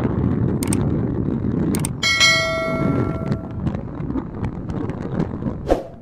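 Subscribe-button animation sound effect: two short mouse clicks, then a bright bell ding that rings for about a second and a half. Under it is a steady background noise.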